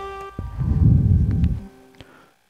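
A held saxophone note with backing music fades out at the start. About half a second in comes roughly a second of loud, low rumbling noise on the close microphone, then it goes quiet.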